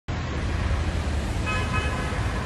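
Traffic rumble, with a short car-horn toot about one and a half seconds in.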